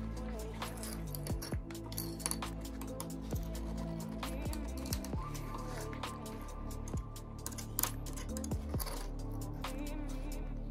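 Background music with steady held tones, over scattered light metallic clicks and scrapes of a flat screwdriver tip against a small BGA chip as it pries at the chip's silicon die.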